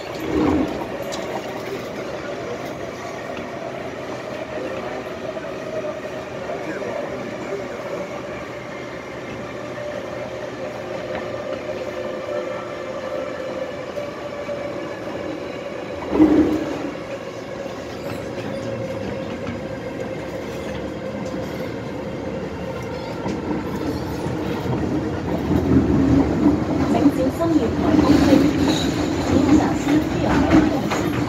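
Interior sound of an MTR M-Train electric multiple unit running: a steady drone with a faint steady whine, and two short knocks, about half a second in and about 16 seconds in. In the last few seconds it grows louder and rougher as the train runs into a station.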